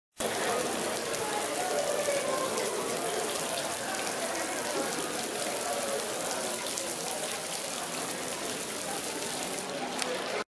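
Fountain water splashing steadily into a stone basin, an even rushing patter.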